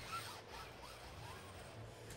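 Faint whine of a competition robot's electric drive motors, rising and falling in pitch as the robot speeds up and slows while driving across the field, over a low steady background hum.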